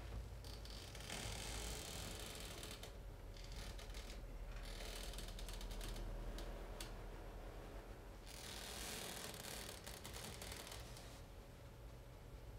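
Tactile transducers on the legs driven with a 40 Hz tone: a steady low hum with a buzzing mechanical rattle that comes and goes. The hum weakens in the last few seconds.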